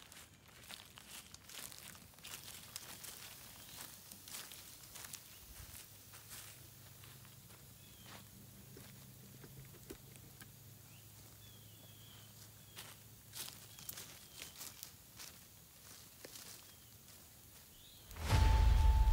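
Faint crunching footsteps on dry leaf litter, with a small wood campfire crackling in scattered sharp snaps.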